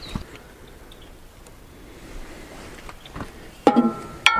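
Faint background with a couple of soft clicks, then near the end a sudden metal clank that rings briefly with a few clear tones.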